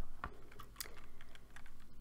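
A few scattered, quiet clicks of a computer keyboard.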